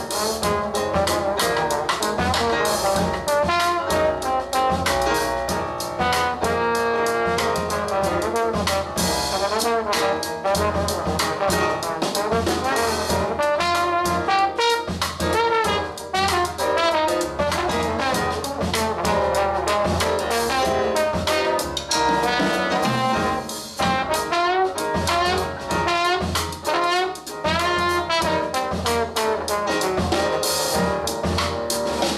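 Live jazz band: a trumpet plays a melodic solo line over keyboards, bass and drum kit.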